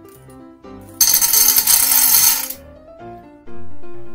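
Small round beads poured from a glass jar into a cup of a baking tin: a dense, bright rattle lasting about a second and a half, starting about a second in. Background music plays throughout.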